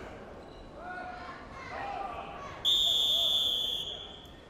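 Referee's whistle blown once: a steady, shrill blast a little over a second long that stops the action on the mat, over faint shouting from the hall.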